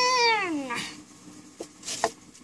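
A long high-pitched call, held on one note and then sliding down in pitch and fading out within the first second. A light knock follows near the end.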